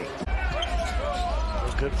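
Basketball game sound in an arena: a ball being dribbled on the hardwood court over a crowd's noise, with a low rumble that sets in suddenly just after the start.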